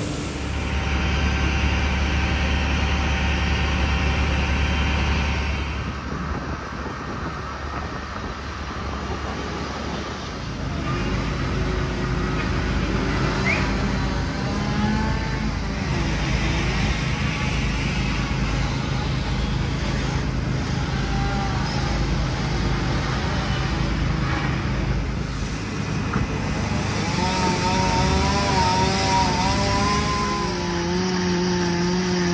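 Fire engines' engines running with a steady low drone, the sound changing at a couple of points.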